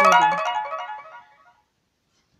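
A short electronic chiming melody of bright tones, ringtone-like, loudest at the start and dying away about one and a half seconds in, followed by dead silence.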